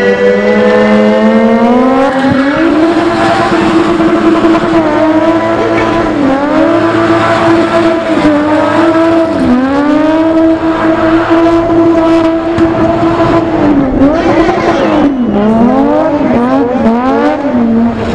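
A BMW E30's enlarged M20 straight-six held at high revs while the car spins donuts, the rear tyres spinning and smoking. The revs climb about two seconds in, dip briefly every few seconds, and swing rapidly up and down near the end.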